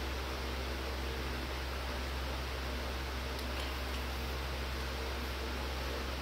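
Steady low hum and hiss of room noise, even throughout, with no distinct events standing out.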